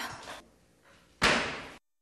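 A single sharp slam about a second in, like something being shut hard, dying away over about half a second.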